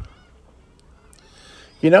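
A quiet stretch of faint outdoor background between a man's words, with a couple of faint, brief high-pitched sounds just after the start. His voice resumes near the end.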